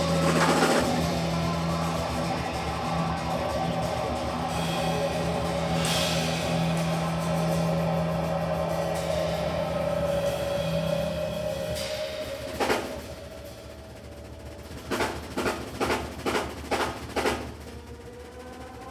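Live band of electric guitar, electric bass and drum kit holding sustained notes over cymbal wash, which stop about twelve seconds in. A single accented hit follows, then a quick string of drum strokes near the end.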